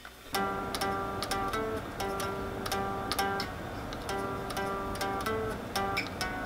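Electric guitar playing a lead melody of quick single picked notes in a clean tone, starting just after the beginning.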